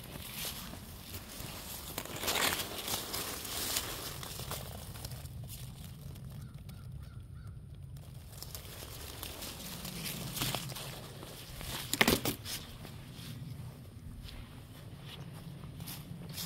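Footsteps crunching through dry leaf litter and brushing past twigs and holly, in scattered crackles with one sharper crunch about three-quarters of the way through.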